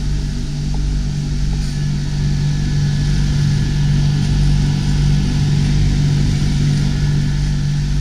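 Marine air-conditioning machinery running in a cabin's under-berth compartment: a steady, loud mechanical hum with a low droning tone and some hiss.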